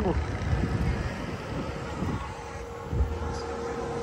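Road traffic: a steady engine hum with a low rumble underneath, and a couple of soft thumps about three seconds in.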